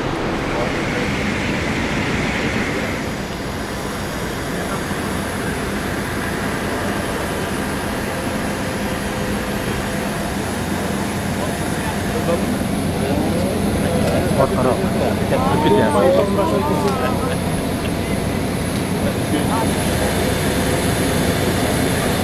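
Steady noisy background with indistinct voices of people talking, a little louder and busier between about twelve and seventeen seconds in.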